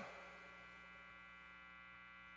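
Near silence: a faint, steady mains hum from the sound system.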